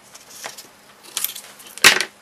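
Scissors snipping and handling sticky tape, with short rustling scrapes, then one sharp knock near the end.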